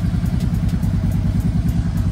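Harley-Davidson Street Glide's V-twin engine idling steadily with a fast, even pulsing, warming up after a cold start.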